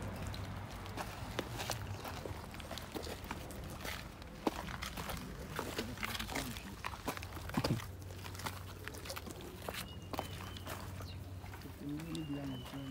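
Footsteps and shuffling on gravelly dirt, with irregular clicks and knocks from handling, over a faint steady low hum.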